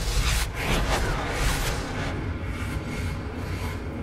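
Soundtrack music from a sci-fi TV episode with a deep rumble and whooshing noise that come in suddenly at the start.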